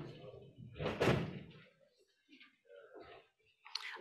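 A single thump about a second in, fading out briefly, followed by faint scattered sounds.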